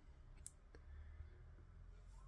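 Near silence with two faint clicks, about half a second in and again just after: a 7-inch vinyl record handled as it is turned over by hand.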